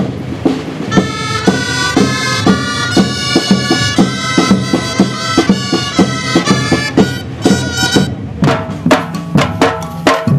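Folk music: a wind instrument playing a melody over a steady drum beat. A little over eight seconds in the melody stops and the drums carry on alone.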